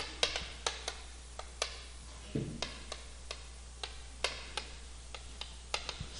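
Chalk writing on a chalkboard: a string of irregularly spaced, sharp taps as the chalk strikes and lifts off the board with each stroke.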